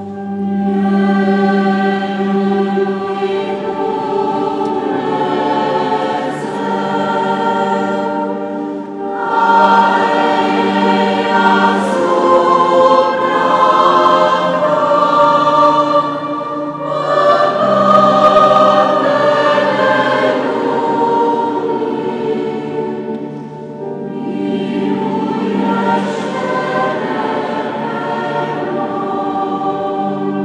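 Church choir singing a sacred song during Mass, in long sustained phrases.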